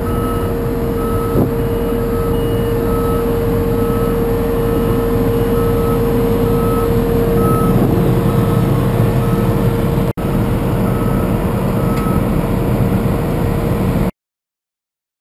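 John Deere T670 combine harvester running, a steady engine and machinery noise with a constant whine over it, while its reversing alarm beeps about twice a second. The sound cuts out for a moment about ten seconds in.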